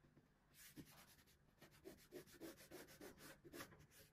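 Faint scratching of a ballpoint pen on paper in a run of quick, repeated short strokes, as in hatching. It starts about half a second in and stops just before the end.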